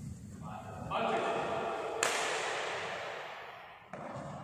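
Men's voices talking or calling out in a large, echoing hall, with a single sharp crack about two seconds in that rings on and fades over the next second or two.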